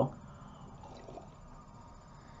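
Quiet small room with faint sips of coffee from a mug.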